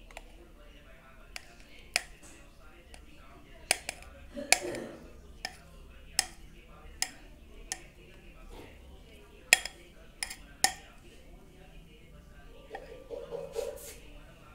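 A spatula scraping and knocking against a glass mixing bowl as thick cake batter is scraped out into a metal cake tin, giving about a dozen sharp, irregular clinks.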